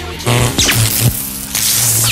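Edited-in music with a loud hissing, static-like noise over it and steady low tones, starting about a quarter of a second in, with a couple of falling sweeps.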